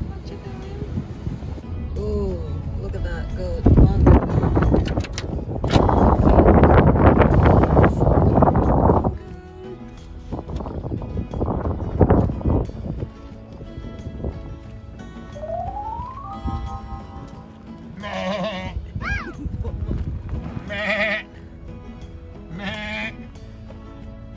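Background music with a loud rushing noise for several seconds in the first half, then four short, wavering bleats near the end.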